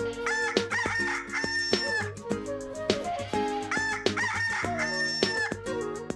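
A rooster crowing twice, a couple of seconds apart, each crow ending in a long held note, over background music.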